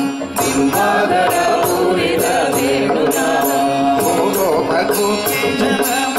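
Group of men singing a Carnatic devotional bhajan together, accompanied by a mridangam and a harmonium holding a steady tone, with a percussion beat struck about two to three times a second.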